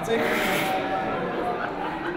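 Audience laughing and chattering in a hall, loudest in the first moment and then settling.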